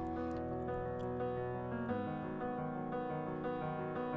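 Soft piano chords from a K-pop ballad playing steadily, the chord changing about two seconds in.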